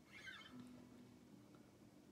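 Near silence: room tone, with one brief, faint, high squeak about a quarter of a second in.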